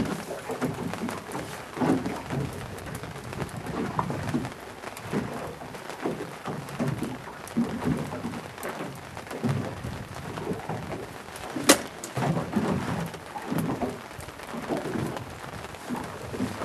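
Uneven wind and water noise around a small boat at sea while a fish is played on a bent rod, with one sharp knock about twelve seconds in.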